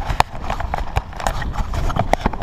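Irregular clicks and knocks, about ten in two seconds, from a GoPro action camera's plastic housing and chest mount being handled and adjusted, over a low rumble of movement.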